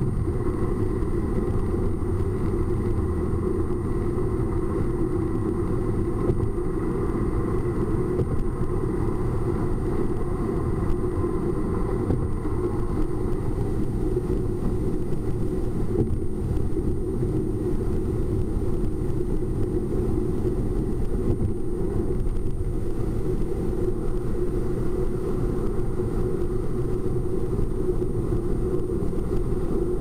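Steady road and engine noise inside a car cabin at highway speed, picked up by a windshield dashcam's microphone, mostly low rumble, with a faint, steady, high-pitched tone above it.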